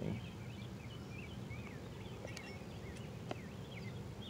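Several birds chirping in the background as short, repeated rising and falling notes, over a low steady outdoor rumble. Two faint clicks come about two and three seconds in.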